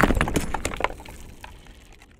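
Sound effect of stone shattering: a rapid clatter of small cracks and falling debris fading away as the crash dies down.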